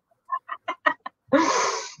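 A person laughing over a video call: a few short, quick chuckles, then a louder, breathy laugh near the end.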